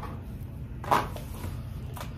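A single short knock about a second in, over a steady low hum.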